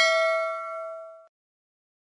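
A bell-like 'ding' sound effect for a notification bell icon being clicked, ringing out with a clear tone and fading for about a second before it cuts off suddenly.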